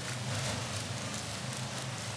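Indoor swimming-pool arena ambience during a race: an even wash of splashing water from the swimmers and crowd noise over a steady low hum.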